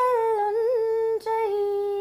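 A woman singing unaccompanied, holding long notes, with a small trill just under a second in and a short breath-break just after a second.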